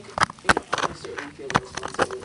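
A few sharp clicks and knocks, about five in two seconds, as of hard objects being handled.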